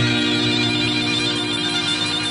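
Background music: several tones held together as a steady, sustained chord.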